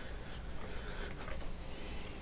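Faint rubbing of fingers on a crocheted yarn piece as a plastic safety eye is worked into place, over a steady low hum.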